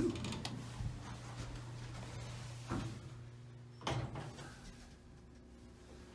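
Elevator car's single-speed door closing: a knock near three seconds in, then a louder thud about four seconds in as it shuts, over a low steady hum that stops at the thud.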